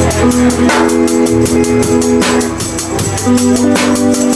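Live band playing an instrumental stretch between sung lines: drum kit keeping time with steady cymbal strokes, electric guitar and held chords underneath.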